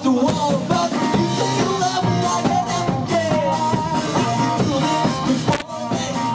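A live rock band playing: a drum kit keeping a steady beat under electric guitar and a Flying V–shaped bass guitar.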